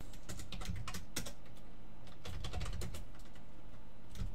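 Typing on a computer keyboard: an irregular run of key clicks as a line of code is entered.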